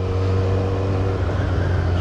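Kawasaki Ninja 1000SX's inline-four engine running steadily on the move, a continuous low drone.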